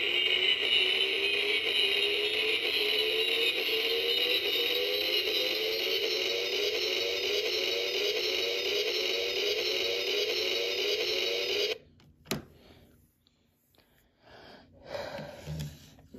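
Liger Zero Midnight Shield electronic action figure playing a sound effect through its small built-in speaker: a tinny, steady electronic buzz with a repeating falling tone. It cuts off suddenly about twelve seconds in, followed by a single click and light handling.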